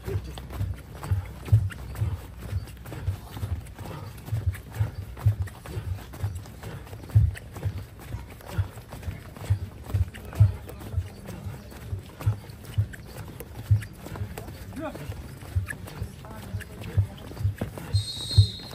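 Running feet of several trainees stepping in and out of a line of tyres on grass: a quick, uneven series of dull thumps, about two to three a second.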